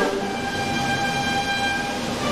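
Concert band holding a loud sustained chord that comes in suddenly at the start, several held notes sounding together.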